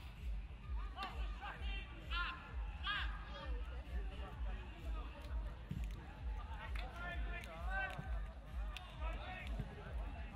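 Players' shouts and calls on an outdoor football pitch, short and scattered, over a steady low rumble of open-air ambience.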